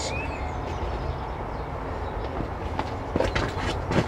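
Steady low background rumble, with a few faint knocks near the end.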